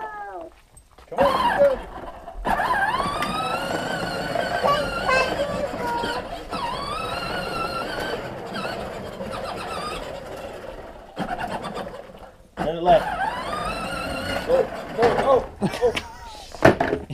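Voices without clear words: a long stretch of wordless vocalizing that rises and falls in pitch through the middle, with shorter vocal bursts before and after it.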